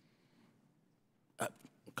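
Near silence: room tone, broken about a second and a half in by a man's short "uh" at the microphone.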